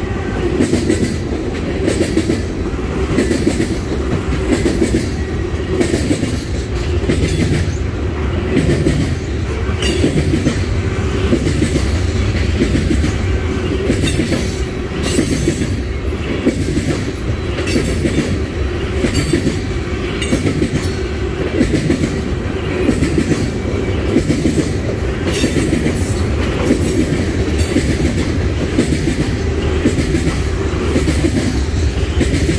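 Tank cars of a long freight train rolling past close by, their steel wheels clicking and clacking over the track in a steady, continuous run.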